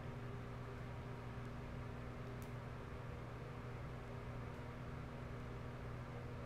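Quiet room tone: a steady low electrical or appliance hum with faint hiss, and a couple of faint clicks.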